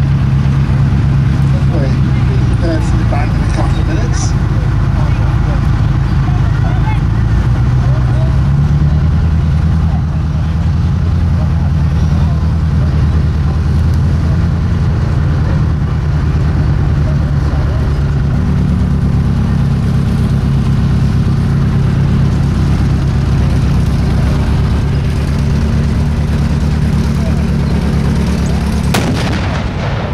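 T-34/85 tank's V-12 diesel engine running as the tank moves slowly, its pitch stepping up and down. Near the end, a single sharp bang as the 85 mm gun fires a blank round.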